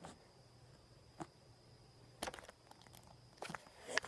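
A few faint, scattered clicks and taps as two pennies are handled and shifted between the hands over a plastic tabletop, with a faint steady hum underneath; a sharper knock comes right at the end.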